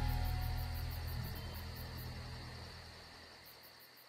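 The band's final chord of a country song ringing out and fading steadily away. Crickets chirp in an even high pulse, about five a second, above it.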